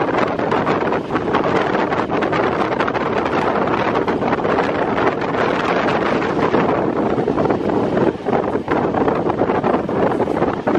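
Rushing wind buffeting the microphone at the open door of a moving passenger train, over the train's running noise. It briefly drops twice near the end.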